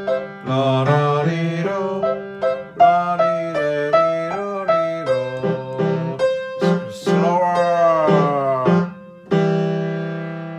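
Upright acoustic piano playing a simple two-handed beginner piece, with a voice singing along wordlessly on syllables. It ends on a held chord about nine seconds in that rings and slowly fades.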